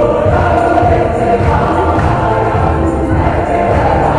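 A choir singing a hymn, many voices holding sustained notes.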